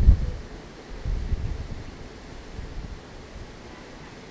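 Wind buffeting the microphone in low, gusty rumbles, strongest right at the start and again about a second in.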